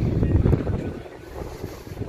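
Strong wind buffeting the microphone: an irregular low rumble that gusts hard, then eases about halfway through.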